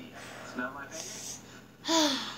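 Short wordless vocal sounds and breaths, with a sharp gasp-like breath about a second in and a loud, sudden voiced sound just before the end.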